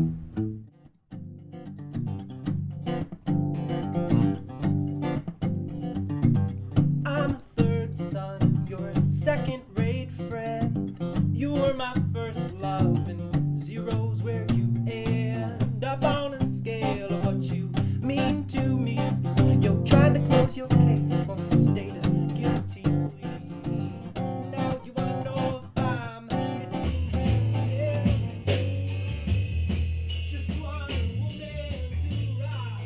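Strummed guitar with a man singing an original song. Near the end the music changes, with steady low bass notes coming in.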